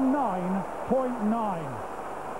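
A sports commentator speaking over the steady noise of a stadium crowd.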